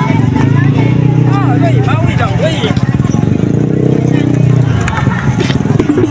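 A motor vehicle engine running, its pitch drifting up a little in the middle and easing back, with people's voices over it.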